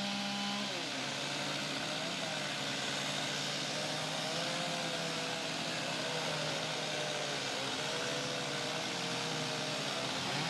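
Several chainsaws running at once, a steady drone with engine pitches wavering up and down.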